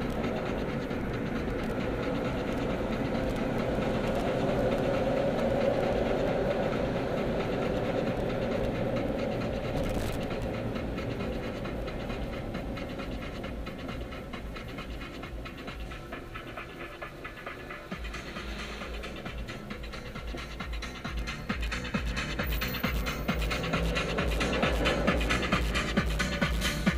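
Road and engine noise inside a car's cabin, easing off as the car slows to a stop in traffic. About two-thirds of the way through, music with a steady low beat comes up and grows louder.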